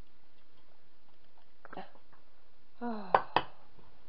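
Two sharp clinks of kitchenware about three seconds in, the loudest sounds here, with a short ringing after each, as a pan of steeped rosehip pulp is poured into a muslin-lined bowl; a fainter knock comes a little before halfway.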